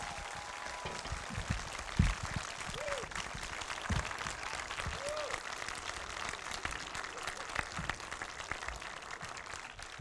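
Audience applauding: a steady patter of many hands clapping, with a couple of dull thumps about two and four seconds in.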